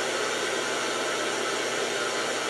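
Ghost box (spirit box radio) on a reverse sweep, giving a steady hiss of white-noise radio static.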